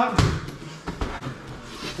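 A single dull thump just after the start, then softer knocks and rustling.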